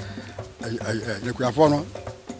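A man speaking, not in English, in short phrases.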